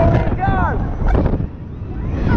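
Rushing air buffeting the microphone with a heavy low rumble as a fairground thrill ride swings riders through the air, with one short falling scream about half a second in.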